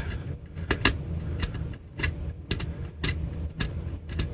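Small screwdriver tip scraping the blackened wood inside a cavity of a plywood guitar body: a string of short, irregular scrapes, two or three a second.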